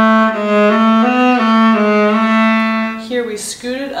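Solo viola played with the bow: a long held note, then a quick figure of short notes stepping up and down, stopping about three seconds in.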